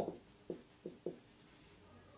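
Marker pen writing on a whiteboard: a few short strokes, quiet.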